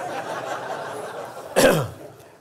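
A man coughing once to clear his throat at a microphone, a short loud burst about one and a half seconds in. Before it there is a low, even murmur of audience laughter in the hall.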